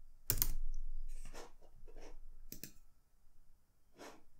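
Typing on a computer keyboard: a handful of separate keystrokes and clicks, spaced out and thinning toward the end.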